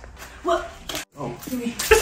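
Short vocal sounds from several people with no clear words, broken by a brief moment of silence about halfway through, and a loud thump near the end.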